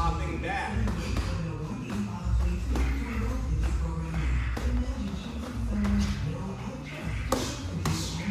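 Music playing in a gym while two boxers spar: scattered taps of gloves landing and feet shuffling on the ring canvas, with a sharp smack near the end.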